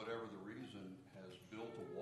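A person's voice speaking off-microphone, faint and indistinct: a class member's comment picked up from across the room.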